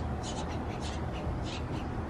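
A bird cawing in short harsh calls, roughly two a second, over a steady low outdoor rumble.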